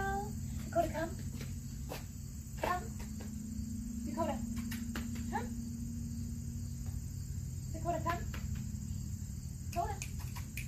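A steady high-pitched insect chorus over a low steady hum, with short faint bits of voice every second or two.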